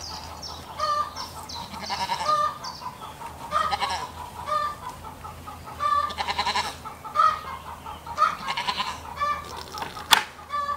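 Farmyard animals calling: a busy run of short, repeated calls, sometimes several a second, with no pause.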